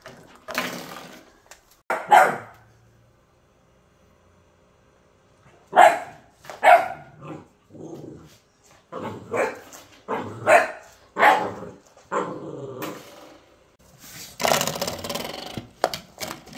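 A dog barking in short, sharp bursts: twice near the start, then, after a pause of a few seconds, a quick run of about ten barks, and a longer noisy stretch near the end.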